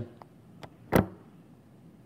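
Two faint ticks, then a single sharp click or tap about a second in.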